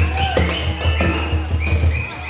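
Tribal dance music: a steady low drum beat under a wavering high melody.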